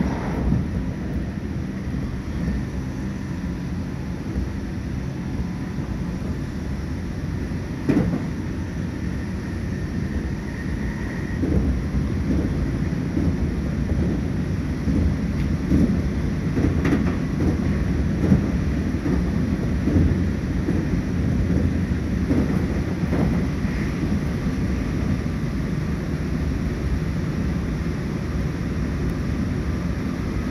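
Electric train running at speed, heard from inside the car: a steady rumble of wheels on rail with occasional sharp knocks from rail joints, growing a little louder about twelve seconds in.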